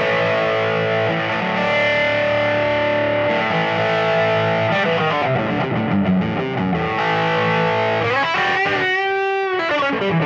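Electric guitar played through an East Amplification Studio 2, a 2-watt amp head with two 12AT7 tubes in push-pull and a 1x10 cabinet, set to an overdriven tone: sustained chords ringing out, then a held note bent with wide vibrato near the end.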